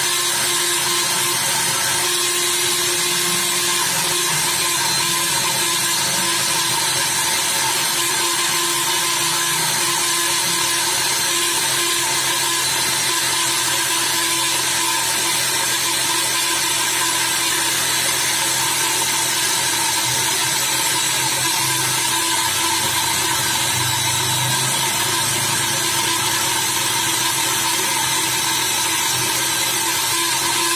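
Handheld rotary buffer with a small wire wheel running steadily at speed, a constant whine, as it grinds the rubber of a tubeless tyre's inner liner; the low grinding under the whine rises and falls a little as the wheel is pressed against the rubber. This is the buffing of the liner around the damage before a patch goes on.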